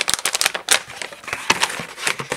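Photographic printing paper and its packaging being handled: irregular crinkling with a run of sharp clicks.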